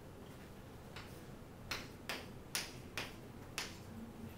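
Chalk clicking against a chalkboard as short strokes are written, about six sharp clicks at uneven intervals starting about a second in.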